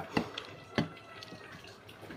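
Wet smacking and clicking of a person eating chicken rendang with the fingers: a few short, sharp mouth smacks as he chews, with quieter soft clicks between.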